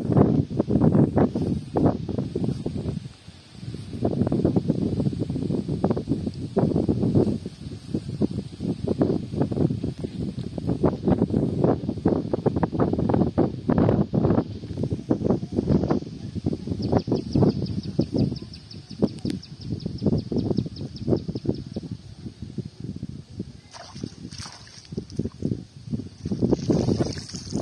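Gusty wind rumbling on the microphone, with rustling as a cast net is hauled in by hand from a pond. Past the middle, a rapid high ticking trill runs for several seconds.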